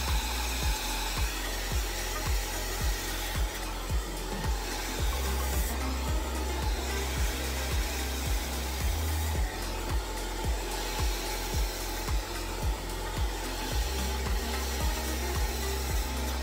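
Elchim 3900 Healthy Ionic professional hair dryer running steadily, blowing on hair that is being styled over a round brush. Background music with a steady beat plays underneath.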